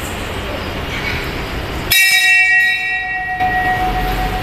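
A temple bell struck once about two seconds in. It rings out with several clear high tones that die away after about a second and a half, while one lower tone rings on. Before it there is steady background noise.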